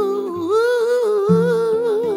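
Male voice humming a wordless melody, holding long wavering notes, over a few plucked acoustic guitar notes.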